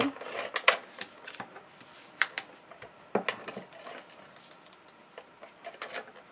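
Scotch Advanced Tape Glider (ATG tape gun) laying double-sided adhesive tape around a cut-out in card stock: irregular clicks and short rattles as the gun is run and lifted, sparser toward the end.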